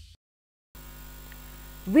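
The tail of a whoosh sound effect fades out at the start, then after about half a second of dead silence a steady electrical mains hum with a buzz to it sets in on the studio microphone line. A woman's voice comes in right at the end.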